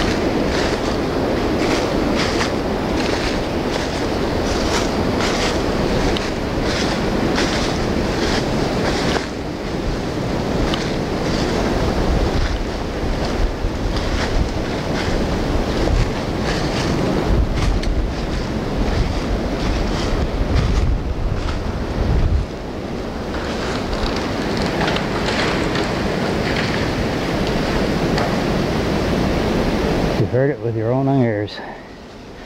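Footsteps crunching through dry fallen leaves and brush, about two steps a second at first and less regular later, under a steady rumble of wind on the microphone.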